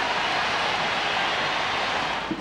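Large stadium crowd cheering a score, a steady roar of many voices.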